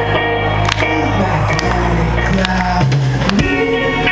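A rock band playing live, heard from within the audience in a concert hall: loud music with regular drum hits under a line of low, held bass notes that change pitch several times, with no singing.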